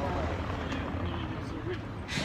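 Steady low rumble of city street noise, with faint voices in the background.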